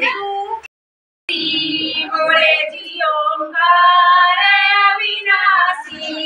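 Women's voices singing a devotional song together in long held notes. It drops out into dead silence for about half a second just under a second in, then resumes.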